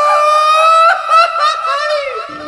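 A woman laughing: a long, high held note that breaks about a second in into shorter, wavering laughs.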